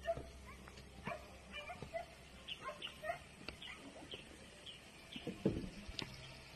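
Short animal calls repeating a few times a second, with a few scattered knocks; the loudest knock comes about five and a half seconds in.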